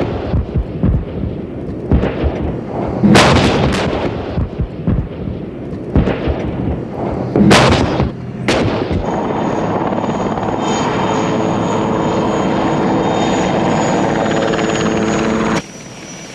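Battlefield weapons fire: three loud blasts about three, seven and a half and eight and a half seconds in, over a rumbling background. After them a steady engine drone with a hum runs on until it cuts off just before the end.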